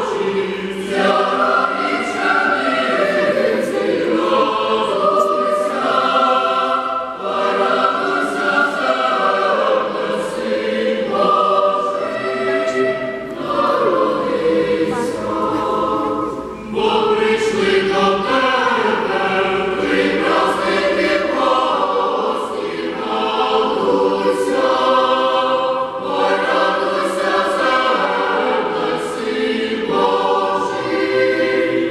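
Boys' and youths' choir singing in many-voiced harmony, with brief breaks between phrases.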